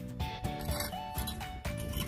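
Background music with a steady beat and a simple melody.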